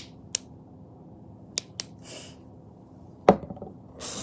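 Small objects being handled and set into a bag: a few sharp clicks in the first two seconds, a soft rustle, then one loud knock about three seconds in.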